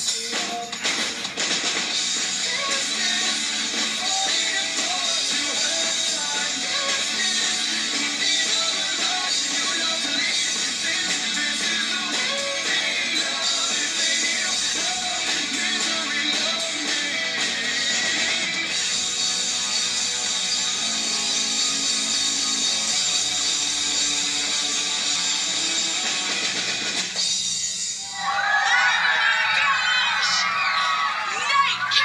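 A Sonor drum kit played hard along with a rock backing track with guitar and vocals, heard through a television's speakers. A few seconds before the end the music stops and a crowd of children cheers and claps.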